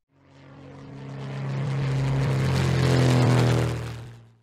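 Propeller airplane engine sound effect holding one steady low pitch, growing louder over about three seconds and starting to fade near the end.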